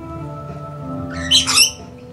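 A rainbow lorikeet gives one loud, harsh screech a little past halfway, over background music with steady held notes.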